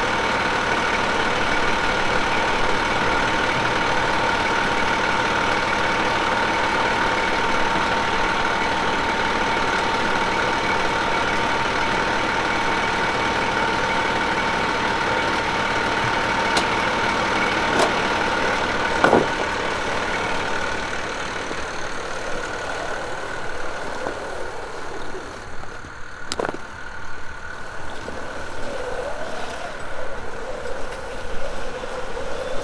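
Fire engine idling steadily, a constant engine hum with a steady whine over it. A few sharp clicks sound just before it grows quieter about two-thirds of the way in, and another comes later.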